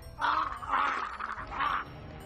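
Harsh, raspy vocal sounds from a killer-doll character in a TV horror series, in three strained bursts.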